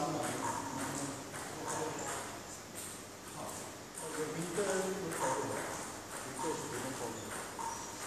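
Indistinct voices talking in a large hall, with a few short light knocks.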